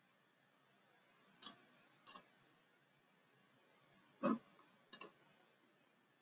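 Computer mouse button clicks: four short clicks spread over a few seconds, most heard as a quick double tick of press and release.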